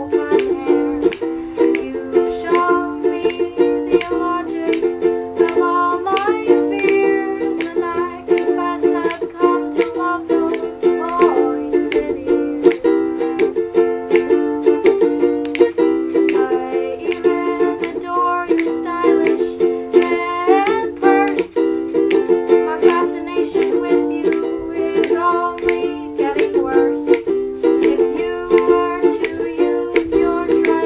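Ukulele strummed in a steady chord rhythm, with a woman's voice singing over it in places.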